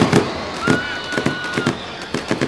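A quick, irregular string of sharp pops and crackles, with a steady high whistle-like tone lasting about a second in the middle.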